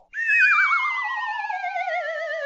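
An electronic, theremin-like sound effect: a wobbling tone sliding steadily down in pitch, with a plain whistle-like tone gliding down alongside it.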